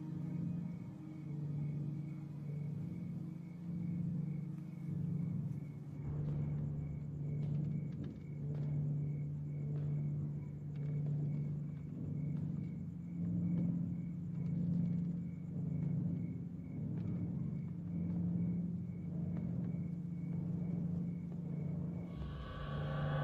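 Low droning horror-film score, swelling and fading about every second and a half. Faint clicks and crackles join about six seconds in.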